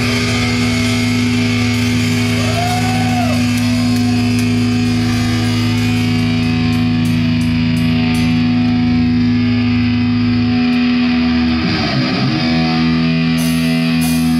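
A black/thrash metal band playing live: distorted electric guitars and bass holding long sustained chords over drums and cymbals, with a brief bent note that rises and falls a couple of seconds in and a change of chord near the end.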